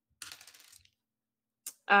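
A brief, faint clatter of small clicks lasting about half a second, a few tenths of a second in, like small hard objects rattling together, with a single click near the end.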